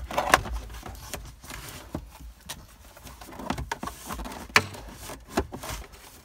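Plastic instrument cluster and its housing being handled and fitted back into a Jeep Grand Cherokee WJ dashboard. Several sharp clicks and knocks of plastic on plastic come between stretches of rubbing and rustling.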